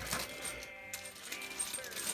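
Light clinks and rattles of small hardware, drill bits and drywall anchors, being handled.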